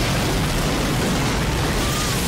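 Film sound effect of a giant tidal wave surging down a city street over cars: a loud, dense, steady rush of crashing water.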